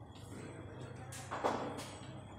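Pool balls clacking against each other as they are gathered into the rack: a few sharp clicks in the second half, the loudest about one and a half seconds in.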